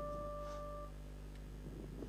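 A held note of cải lương musical accompaniment fades away and stops about a second in, leaving only a faint steady low hum.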